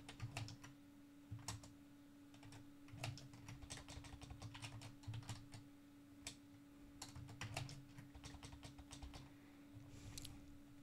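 Computer keyboard typing, faint, in irregular bursts of keystrokes with short pauses between them.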